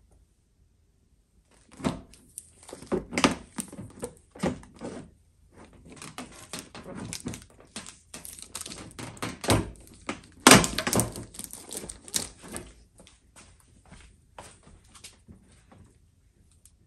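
A plastic-wrapped DWVO aftermarket headlight assembly being handled and pushed into place in the truck's front end: a run of irregular knocks and plastic rustling that starts about two seconds in, is loudest around ten seconds in, and thins out near the end.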